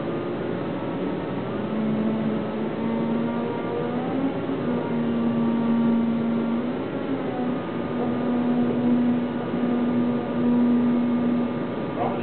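Electric forklift's motor and hydraulic pump whining steadily under a mechanical hum. The whine steps up in pitch about a second and a half in and again about seven seconds in.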